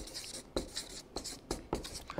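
Marker pen writing on flipchart paper: a series of short, quiet strokes, a few each second.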